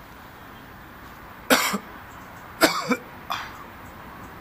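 A man coughing three times, the second cough the longest and loudest.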